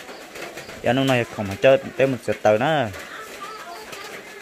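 A person talking in short phrases, with a quieter stretch near the end.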